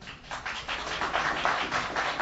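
A small group of people clapping: a quick, dense run of hand claps that starts just after the announcement and keeps going.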